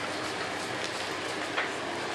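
A steady hiss with one short, light click about one and a half seconds in, as a Shih Tzu noses a plastic cream cheese tub on a tile floor.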